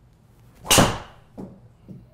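PING G425 LST driver striking a teed golf ball: one loud, sharp crack of impact about three quarters of a second in, followed by two short, fainter knocks.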